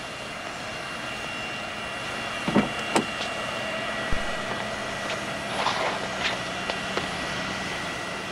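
Steady whine and rush of a jet airliner's engines running nearby, with a few short knocks and a thump from about two and a half seconds in.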